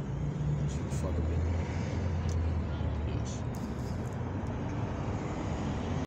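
A steady low rumble, like vehicle noise, with a few faint clicks and a brief faint voice about a second in.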